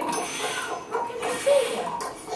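A woman's voice in short, rising and falling vocal phrases, with one louder, briefly held note about one and a half seconds in.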